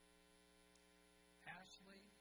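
Near silence with a faint steady electrical hum; about one and a half seconds in, a voice begins speaking.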